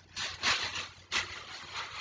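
Plastic shopping bag rustling and crinkling in a few short bursts as it is handled.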